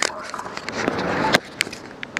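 Bicycle rolling over street pavement, heard through a bike-mounted camera. Sharp clicks and knocks of the bike and camera mount sound as it moves off, the loudest just at the start and about a second and a half in, over a low rumble of street noise.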